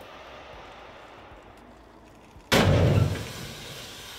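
An orange Volvo sedan crashing into the back of a stationary truck trailer: one sudden heavy crash a little over halfway through, after a stretch of faint background noise. The car's automatic emergency braking has failed to stop it short of the trailer.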